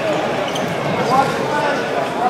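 Indistinct chatter of several overlapping voices in a gymnasium, with no single voice clear.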